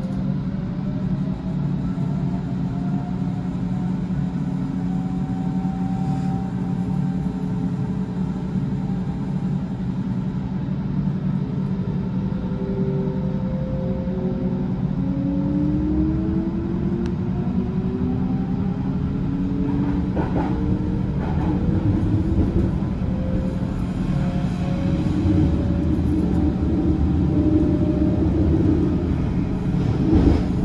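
Berlin S-Bahn electric train running, with a steady rumble and the motors' whining tones gliding in pitch. The tones climb over the middle of the run as the train picks up speed, with a couple of brief knocks about two-thirds in.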